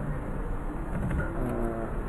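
Steady low background rumble, with a brief murmur of voice near the end.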